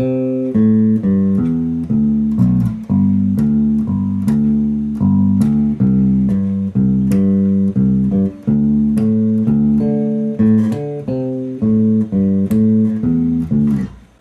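Unaccompanied electric bass guitar playing a repeating riff of plucked notes: a simplified form of the closing part of the bassline. It is picked up through a camera's built-in microphone, with some audible compression.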